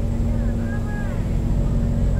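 Steady low background rumble with a constant hum. Faint short rising-and-falling tones come through about halfway in.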